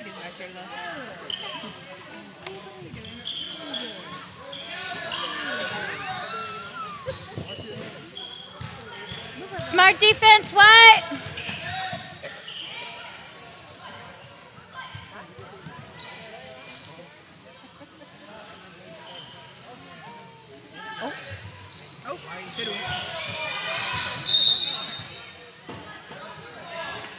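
Indoor basketball game sounds: a basketball bouncing and sneakers squeaking on the hardwood court, under the chatter of spectators in an echoing gym. A loud, wavering call rings out about ten seconds in.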